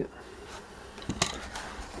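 A backpack and its contents being handled: quiet rustling with a few small ticks and one sharp click a little over a second in as a selfie stick is pulled out.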